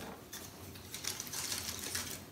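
Dry pine cones clicking and rustling against each other and against a dry contorted-willow ring as they are handled and pressed into place.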